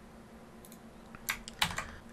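A few computer keyboard key presses after a quiet stretch, clicking in a quick cluster about a second and a half in, as with copy and paste shortcuts.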